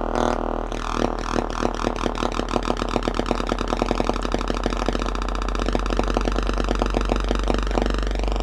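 Sine-wave frequency sweep through an LM1875 chip amplifier driven into distortion, a tone dense with overtones over a steady low hum. The 100 µF supply filter capacitors let the rail sag under load. The owner is unsure whether this is clipping or the rail dropping below the chip's operating voltage so that it cuts out.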